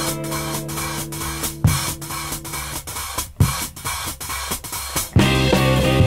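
Instrumental break of a 1970 British progressive/psychedelic blues-rock song. Rock drum kit with busy hi-hat and cymbal strokes plays over a low held note. About five seconds in, the guitars and bass come back in loudly on a chord.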